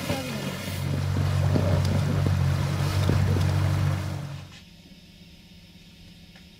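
Small boat's outboard motor running steadily under way, with wind on the microphone and water rushing past. The sound drops away suddenly about four and a half seconds in, leaving only a faint steady hum.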